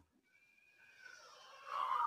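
Near silence for about the first second, then a man's voice coming in faintly and growing into speech near the end.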